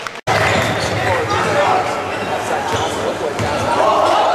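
Live game sound in a gymnasium: a basketball bouncing on the hardwood court amid crowd voices in a large echoing hall. The audio cuts out suddenly for a moment about a quarter second in.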